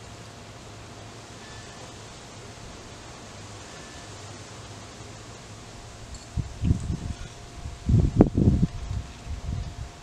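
Quiet outdoor air for several seconds, then, from about six seconds in, wind gusts buffeting the microphone in loud, uneven, low bursts that last about three and a half seconds.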